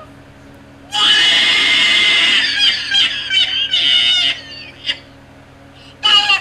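A loud, harsh scream starts suddenly about a second in and lasts about three and a half seconds, followed by one short cry near the end.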